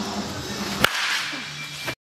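A baseball bat striking a ball in one sharp crack a little under a second in, over background music; the sound cuts off just before the end.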